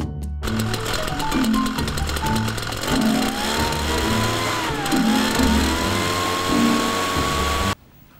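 Cifarelli backpack power mist blower's two-stroke engine and blower fan running with a loud rushing hiss. Its pitch climbs about three seconds in, dips briefly, then holds high as the engine revs up, over background music with a steady bass beat. It cuts off suddenly near the end.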